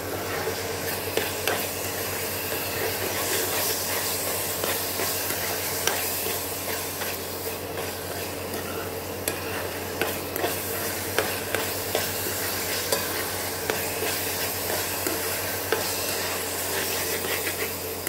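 A metal spoon stirring and scraping thick radish halwa in an aluminium kadai, with irregular sharp clicks as it knocks the pan. The mixture sizzles steadily in the pan as it is stirred and cooked down until it turns thick.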